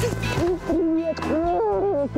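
Wordless, drawn-out 'ooh' voices gliding up and down in pitch, at times two at once, as two people greet and hug.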